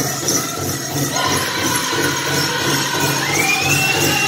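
Powwow drum group beating the big drum in a steady beat for a chicken dance song, with bells on the dancers' regalia jingling in time. Near the end a single thin, high tone slides up and holds.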